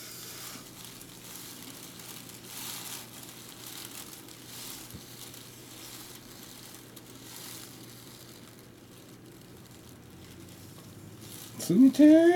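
Hand rubbing shaving gel over a close-cropped scalp in soft, slow strokes, with a plastic cape crinkling faintly. Near the end a man's voice gives a short sound that rises in pitch.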